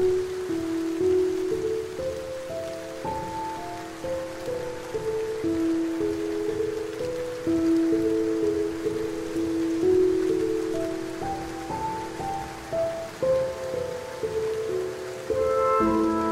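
Slow, calm instrumental music, a melody of long held notes, laid over the steady patter of rain on leaves. Near the end the music fills out with more and higher notes.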